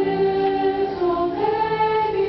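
Mixed high-school choir singing held chords in close harmony, the voices moving together to a new chord about a second and a half in.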